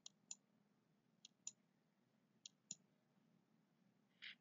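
Faint clicking of computer controls against near silence: six short, sharp clicks coming in three pairs, about a second apart.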